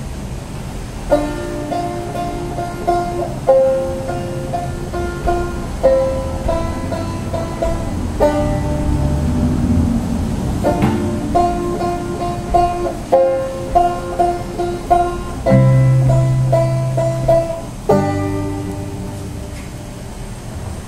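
Banjo and acoustic guitar playing an instrumental passage of a folk song, the banjo picking a short melodic phrase that repeats every couple of seconds.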